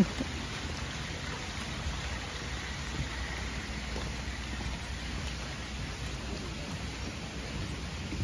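Steady light rain falling on a pond's surface and the surrounding foliage, an even patter with a low rumble underneath.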